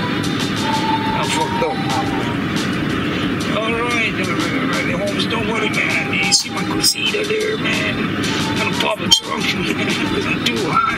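Music with voices mixed in, at a steady level, with a few sharp clicks or hits about six and a half, seven and nine seconds in.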